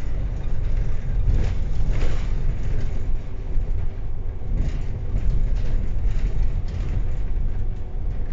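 Inside a MAN DL 09 double-decker city bus driving along: a steady low rumble of engine and road, with a few faint clatters from the bodywork.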